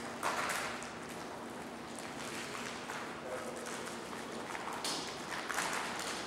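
Meeting-room background: short rustles of paper and movement, with light steps on a tiled floor, over a faint steady hum.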